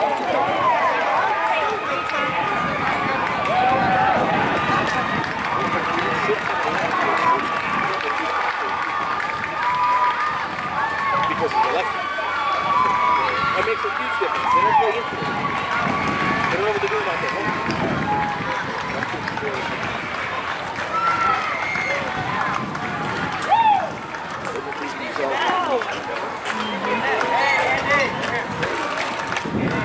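Spectators' voices at a youth baseball game: many overlapping calls and chatter from the crowd. There is one short sharp knock about two-thirds of the way through.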